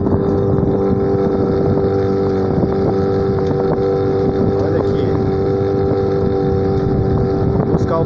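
Small outboard motor running steadily under way, an even drone.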